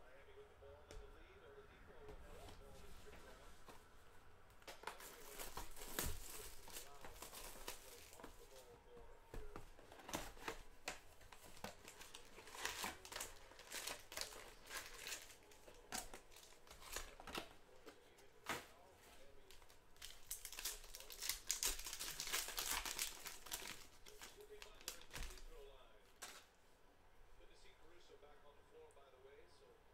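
Trading-card pack wrappers crinkling and tearing open, in several spells with small clicks of cardboard and cards being handled.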